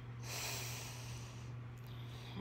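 A person's soft breath, about a second long, heard as a quiet hiss without voice, over a steady low electrical hum.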